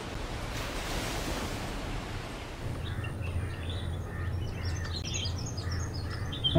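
Outdoor ambience: a steady hiss of background noise, with small birds chirping in short calls from about halfway through.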